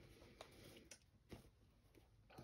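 Near silence: quiet room tone with three faint, short clicks of hands handling cloth.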